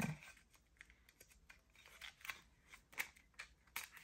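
Quiet, irregular small ticks and light rustles of stiff, shiny holographic cards being handled and shuffled against one another.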